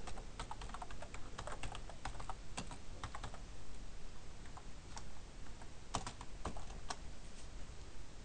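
Computer keyboard being typed on: irregular keystroke clicks in short runs, with a thinner stretch near the middle.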